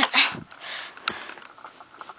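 A person sniffing once through the nose, followed just after a second in by a single light click, then faint handling noise.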